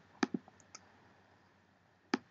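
Two quick computer mouse clicks, followed by a few fainter ticks.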